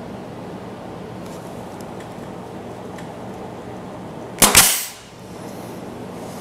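Brad nailer firing a brad into a wooden end piece: one sharp shot about four and a half seconds in.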